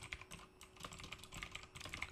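Computer keyboard typing: a quick, irregular run of faint key clicks.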